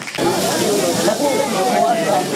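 Several voices of players and spectators calling out at once at a football match, over a steady hiss; it sets in abruptly a moment in.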